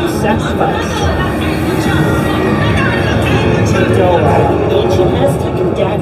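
Haunted-maze soundtrack: loud music with voices, over a steady low rumble.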